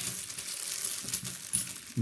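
£2 coins clinking and scraping against one another as a hand slides them across a towel and picks them up, a steady run of small clicks and rustles.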